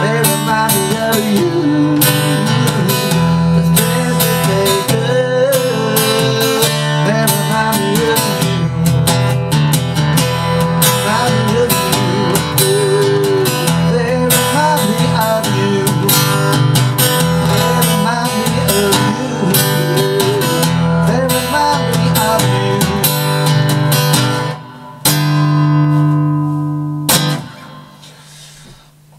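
Acoustic guitar strummed in a steady rhythm through an instrumental passage. It closes on a final chord that rings for about two seconds and is cut off shortly before the end.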